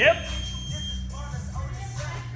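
Gym workout clock's long start beep, a steady high tone lasting about a second, over background music.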